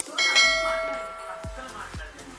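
A bright bell-like chime sound effect rings out just after the start and fades away over about a second and a half, as a subscribe-bell notification sound. Near the end, background music comes in with a steady low beat about twice a second.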